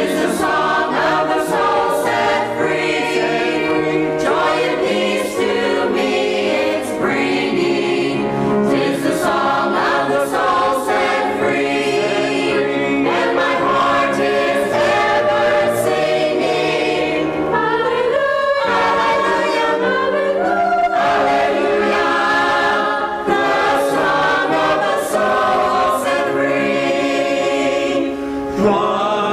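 A mixed church choir of men's and women's voices singing an anthem in parts, with one short break between phrases about two-thirds of the way through.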